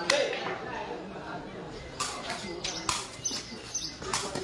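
Several sharp knocks of a sepak takraw ball being kicked during a rally, one right at the start and a cluster in the second half, over faint chatter of onlookers.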